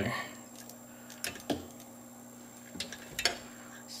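A few faint clicks and taps as multimeter probes and stripped wire ends are handled, over a steady low electrical hum.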